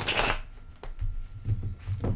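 A tarot deck shuffled by hand: a brief rush of cards riffling at the start, then a sharp click and softer knocks as the deck is handled.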